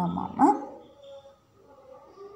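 Short pitched vocal sounds in the first half second, the last one rising in pitch and loudest.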